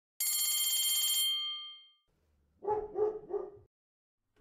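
An electric bell rings rapidly for about a second and dies away, then a dog barks three times.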